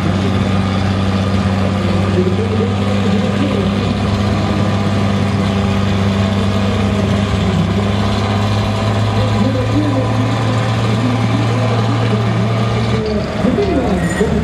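Diesel engine of a tractor-pulling tractor running steadily at a standstill, throwing thick black smoke, with a steady low hum that drops away about a second before the end.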